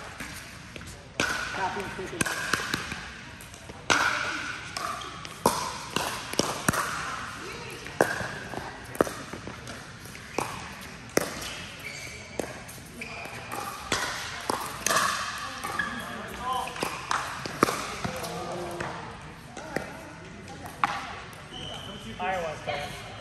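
Pickleball rally: repeated sharp pops of paddles striking the plastic ball and the ball bouncing on the court, at uneven intervals of about half a second to a second and a half, with a short echo from the large hall. People's voices call out between shots.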